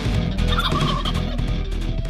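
A wild turkey tom gobbling once, a short rattling call about half a second in, over loud background music.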